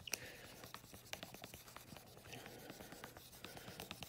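Faint rubbing on a dry-erase whiteboard clipboard as marker diagrams are wiped off, with scattered small ticks.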